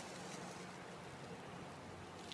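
Faint, steady background hiss with no distinct event standing out.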